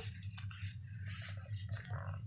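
Faint rustling and small handling sounds as a reborn doll's sock is pulled at and worked off its foot, over a steady low hum.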